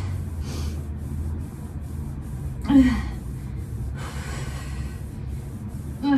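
A woman breathing hard during a sliding plank-jack exercise: forceful breaths in and out, with one short voiced gasp about three seconds in, over a low steady hum.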